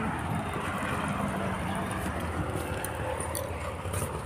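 Steady outdoor background noise with a low rumble and a few faint ticks.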